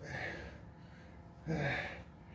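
A man's heavy, voiced breaths of exertion while lifting a dumbbell, two short huffs about a second and a half apart, the second one louder.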